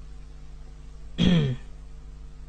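A man's single short vocal sound, a brief throat-clearing grunt that falls in pitch, about a second in. A steady faint low hum lies under it.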